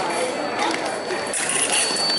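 Clicking and clatter of a foil bout, blades meeting and feet striking the strip, with a thin steady high tone starting near the end, typical of the scoring machine signalling a touch.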